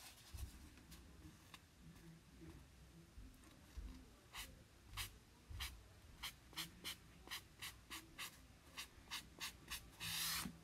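Faint scrubbing of a cloth rubbed over a wooden sign along the grain, wiping off chalk paste. The short strokes are sparse at first, then come about three a second from about halfway through.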